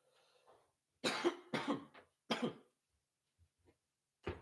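A man coughing hard three times in quick succession, after a faint rasping breath: the coughing fit of someone who has just taken a hit from a smoking bowl.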